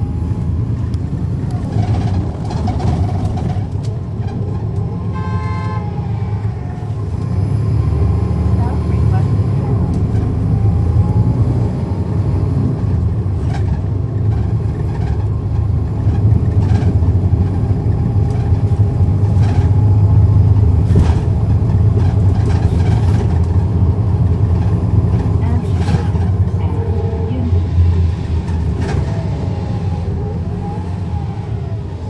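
Cummins ISL9 diesel engine of a NABI 40-SFW transit bus, heard from the rear seats as the bus drives. The engine builds from about eight seconds in, is loudest around twenty seconds and eases near the end, with scattered rattles. A short vehicle horn toot sounds about five seconds in.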